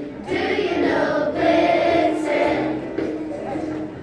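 A children's choir singing together, holding notes that change every half second or so.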